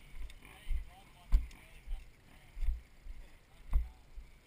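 Footsteps walking down a steep dirt slope, heard as dull, uneven thuds roughly every half second to second, with faint voices in the background.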